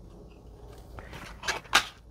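An awl being pushed through layered paper flowers, the paper crackling: a soft rustle about a second in, then two short, sharp crunches near the end, the second louder.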